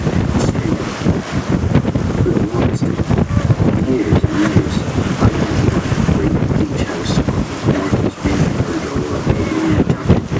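Wind buffeting the microphone with water rushing past the hull of a sailing boat under way; a loud, uneven rumble with no steady rhythm.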